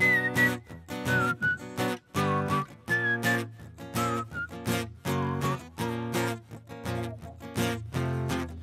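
Acoustic guitar strummed in a steady rhythm under a whistled melody: two short phrases that each step down in pitch.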